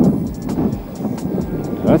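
Peugeot 206 RC's four-cylinder engine idling just after being restarted, with irregular footsteps and handling knocks over it.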